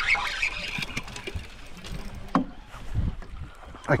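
Steady rush of wind and water around a small fishing boat, with a few dull knocks in the second half.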